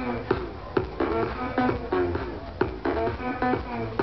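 Loud live music over a concert sound system, with a steady beat of about two hits a second under a repeating melodic riff.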